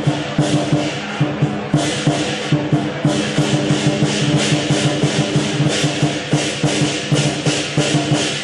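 Chinese lion dance percussion: a lion drum with clashing cymbals and gong, playing a fast, even beat over a ringing low tone.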